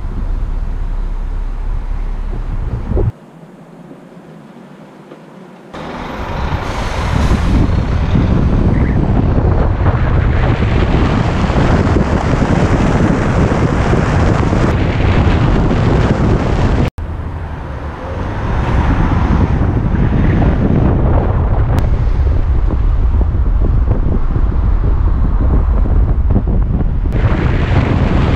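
Wind buffeting a camera mounted on the outside of a moving car, over the car's road noise: a loud, steady rush. About three seconds in it drops much quieter for a few seconds, then the loud rushing returns.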